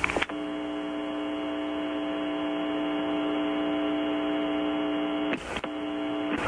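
A steady, pitched electronic buzz on the communications audio line, held for about five seconds. It drops out briefly near the end and then resumes.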